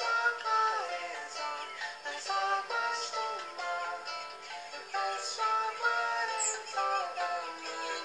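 Music: a melody of pitched, partly gliding notes over held chords.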